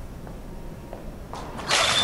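A quiet stretch, then a short rush that breaks into a sudden loud crash about one and a half seconds in: a film sound effect of a body being slammed into a wall, with plaster bursting from it.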